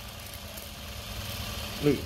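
Industrial straight-stitch sewing machine running steadily, stitching free-motion quilting through fabric under a metal quilting foot.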